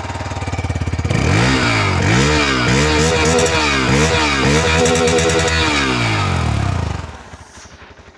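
Hero XPulse 200's single-cylinder four-stroke engine, freshly kick-started, revved in a quick series of throttle blips for about six seconds, then settling back near the end.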